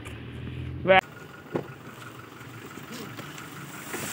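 Car engine idling, heard inside the cabin as a steady low hum for about the first second. The sound then cuts to quieter surroundings with one short click.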